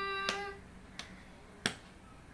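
A child's voice holding a steady sung note that ends about half a second in, then three sharp hand strikes keeping time, about two-thirds of a second apart, the last the loudest.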